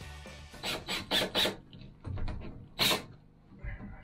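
Short rasping scrapes from hand work on the shower-door frame: four in quick succession around the first second, then one louder scrape near three seconds.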